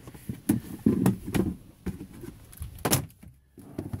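Hard plastic storage box and hand tools being handled and set down: a series of separate knocks, clunks and clicks. The sharpest knock comes just before three seconds in.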